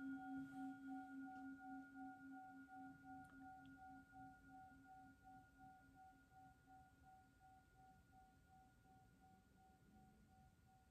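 A metal singing bowl, struck just before, ringing on with a few clear tones that waver in a slow pulse and fade gradually to faint. It marks the start of a minute of silent contemplative prayer.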